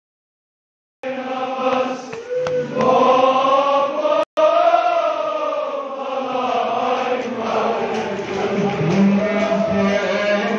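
Men's voices chanting a noha, a Shia mourning lament, in a sung, wavering line. The sound cuts out completely for the first second and again for a split second just after four seconds.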